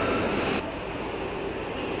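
Steady noise of a factory hall with machinery running in the background, easing slightly after about half a second.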